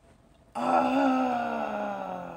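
A woman's long, drawn-out "ohh" of delight at a gift, starting about half a second in and sinking slowly in pitch.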